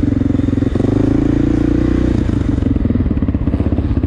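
Honda XR600R's air-cooled single-cylinder four-stroke engine running at low revs as the bike rolls slowly, its firing pulses steady, with a brief break in the note about three quarters of a second in and the note easing off after about two seconds.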